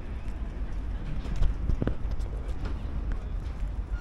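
Footsteps on cobblestone paving: irregular hard knocks, about two a second, over a steady low rumble.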